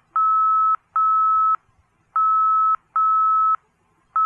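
Morse code identifier of the Ormond Beach VOR (OMN) heard over the nav radio: a steady, high, single-pitched beep keyed in four long dashes, in two pairs with a longer gap between them. These are the end of the letter O and the letter M of the ident.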